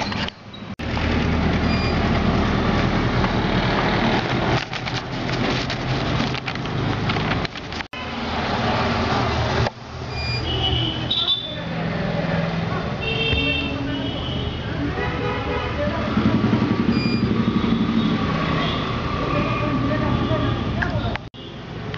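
Steady background noise with a low rumble, like road traffic, and indistinct voices, with a few short pitched tones in the second half and brief sudden dropouts.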